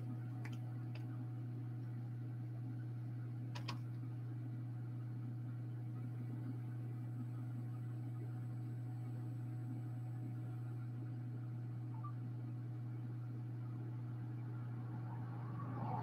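Steady low hum of room background, with a faint click a few seconds in and light handling rustle near the end.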